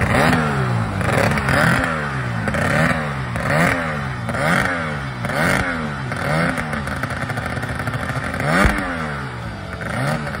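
Evinrude 45 two-stroke outboard motor running on a racing boat held at the dock, revved in quick blips about once a second, its pitch rising and falling with each blip.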